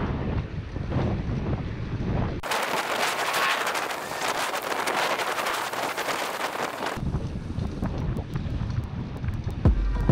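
Wind buffeting an action camera's microphone on a moving bicycle in traffic: a low, rumbling rush. About two and a half seconds in it cuts abruptly to a bright hiss with little low end. After about four and a half seconds it cuts back to the rumble, with a few faint ticks near the end.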